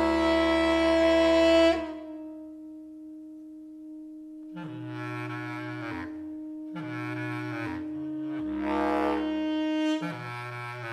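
Live large ensemble of saxophones, clarinets, brass and strings playing contemporary jazz: a loud full chord cuts off about two seconds in, leaving a single held note, then three short ensemble phrases enter over it, each with low notes underneath.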